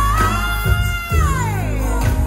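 A woman singing one long high held note with vibrato into a microphone over live band accompaniment, the note sliding down in pitch in the second half.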